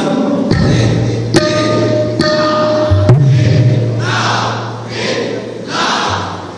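Live drum strikes from a stage percussion setup, amplified in a large hall. A few sharp hits are each followed by a deep booming low note that rings on for two to three seconds. Short noisy washes come near the end.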